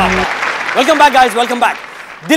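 Title music with a drum beat cuts off about a quarter second in, followed by studio applause with a raised voice over it, fading out near the end.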